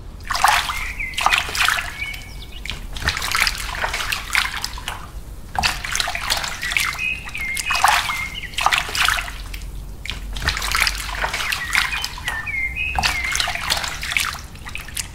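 Water poured in repeated splashing bursts, running down and splattering into a muddy puddle on the soil.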